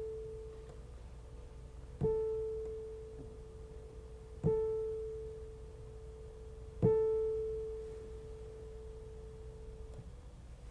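Yamaha Clavinova CLP340 digital piano with the same mid-range key struck three times, about two and a half seconds apart. Each note keeps ringing and fades slowly into the next strike instead of being cut off. This is the damper sensor at work: the key is replayed before it returns to the top, and the earlier notes are not muted.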